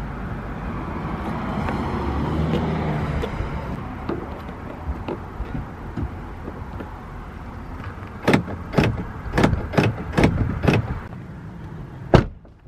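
Car door lock clicking as the lock pin is pushed down and pulled up repeatedly, about six sharp clicks a half second apart, testing that the newly fitted pin moves freely.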